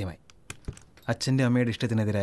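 A quick run of light clicks and one dull knock, followed by a person speaking.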